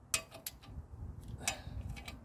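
A ratchet wrench clicking a few times, in short runs, as the bolts holding an engine's cooling fan over a soft plastic spacer are tightened.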